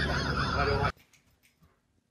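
A dog's yelping calls over a steady background hum, cut off abruptly about a second in, then near silence.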